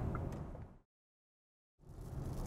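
Steady road and tyre noise inside the cabin of a VW ID.7 GTX Tourer electric estate at motorway speed on a wet road. It fades out to complete silence just under a second in, then fades back in near the end.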